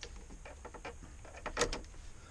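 Small plastic clicks and scrapes of a blade fuse being worked out of an Iveco Tector truck's dashboard fuse box with a screwdriver, with one louder click about one and a half seconds in.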